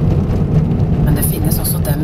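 Steady low rumble of a car's engine and tyres on a snow-packed road, heard from inside the cabin while driving.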